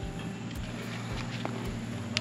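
Faint handling noise as a Starlink satellite dish is moved and set down, over a steady low background hum, with one faint click about one and a half seconds in.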